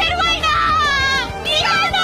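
Anime character's voice yelling in pain in Japanese, high and strained, wavering in pitch, over background music.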